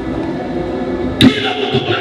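A man's voice preaching through a handheld microphone and PA, with one sharp pop on the microphone about a second in, the loudest sound here.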